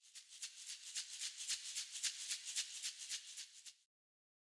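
A shaker rattling in a quick even rhythm, about eight shakes a second, starting abruptly and cutting off sharply just before the end.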